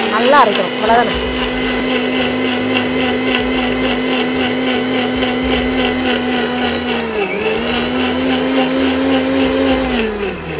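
Electric mixer grinder running at full speed, blending jamun fruit juice with a steady motor whine. Its speed dips briefly about seven seconds in and picks up again. It winds down as it is switched off at the very end.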